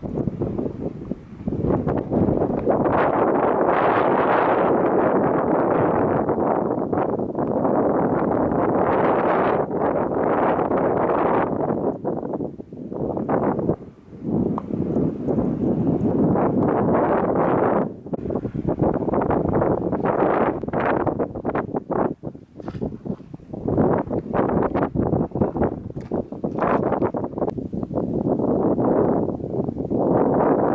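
Wind buffeting the camera's microphone in gusts: a loud, rushing noise that surges and eases, dropping off briefly a few times.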